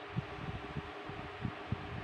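A pause between words: a steady background hiss of room noise, with a few faint low knocks.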